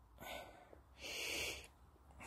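Two faint breaths close to the microphone, a short one and then a longer one about a second in.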